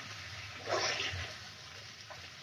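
Chopped cabbage and greens being stir-fried in a metal wok, a spatula turning them over over a soft, steady sizzle, with one short rustle of the spatula moving the vegetables about three-quarters of a second in.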